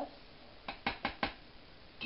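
A metal spoon clinking against metal cookware four times in quick succession while tomato sauce is being spooned out: short, sharp knocks a fraction of a second apart.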